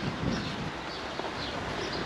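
Outdoor background noise with a few faint, short bird chirps.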